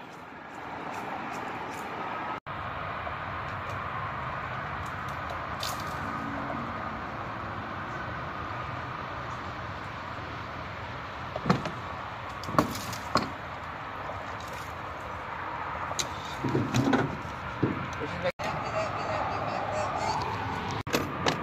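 Branches and leaves rustling over a steady noisy background, with a few sharp snaps and cracks about halfway through and again near the end, as a lure snagged in an overhanging tree is worked free.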